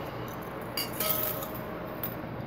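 Light metallic clinks of ceiling fan hardware being handled as the wires are fed through the metal down rod, with a tap about a second in that leaves a short, faint ringing tone.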